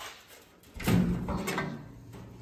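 Hood of a Willys CJ-2A Jeep being swung open on its hinges: a short stretch of metal handling noise with a few clicks, about a second in.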